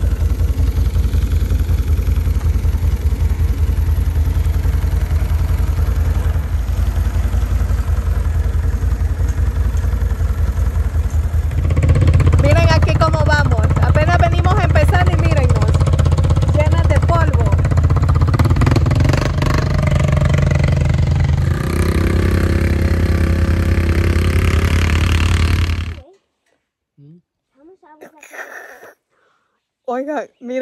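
ATV engine running while the quad is ridden. It gets louder about twelve seconds in, when a voice-like sound rides over it for several seconds. The sound cuts off abruptly a few seconds before the end.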